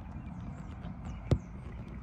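A single sharp tap about 1.3 seconds in: a phone knocking against a window pane. Under it is a faint, steady low rumble of outdoor background noise.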